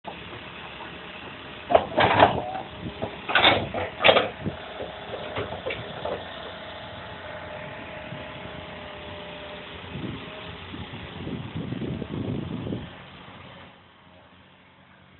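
O&K crawler excavator running steadily while its bucket digs into stony ground: loud scrapes and clanks of steel on rock about two seconds in and again around three and four seconds. A longer spell of scraping comes near the end, and then the sound drops away.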